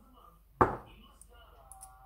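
A single sharp knock about half a second in as a salt shaker is set down on a wooden chopping board, followed by quiet handling sounds.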